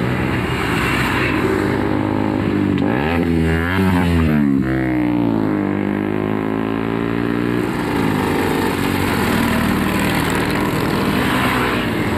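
Motorcycles riding past one after another, engines running steadily. One passes close about four seconds in, its engine pitch rising and then dropping as it goes by.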